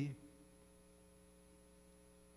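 Faint, steady electrical mains hum, after the last fraction of a spoken word right at the start.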